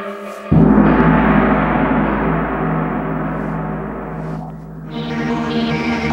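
Sampled gong patch on a Korg Kronos synthesizer: one strike about half a second in, with a deep ring that slowly fades. Near the end a rhythmic electronic synth pattern comes in as the sequenced track switches to its next program.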